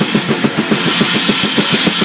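Drum kit with Orion cymbals played with sticks: a fast, even run of drum strokes, about eight or nine a second, under a sustained cymbal wash.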